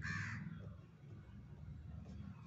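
A single short, harsh bird call, like a caw, right at the start, then only faint background.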